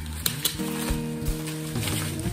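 Crinkling and rustling of clear plastic wrap as a package is handled, with a few sharp crackles about a quarter and half a second in. Background music with held notes plays underneath.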